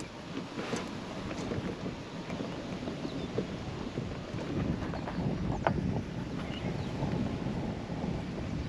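Wind buffeting the microphone while an electric golf cart rolls over grass: a low, uneven rumble with a few faint knocks.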